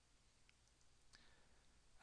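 Near silence: room tone with two faint computer mouse clicks.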